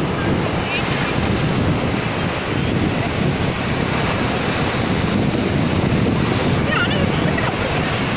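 Sea waves breaking and washing up a sandy beach in a steady rush of surf, with wind buffeting the microphone.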